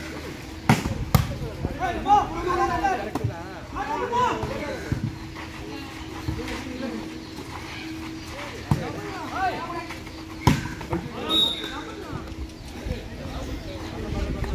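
Volleyball being struck by hand during a rally: a pair of sharp smacks about a second in and two more later on, with players' and spectators' shouts between the hits.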